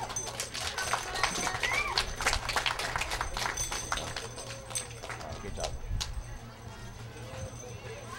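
Scattered hand clapping from a small crowd, thickest for the first few seconds and then thinning out, with faint voices behind it.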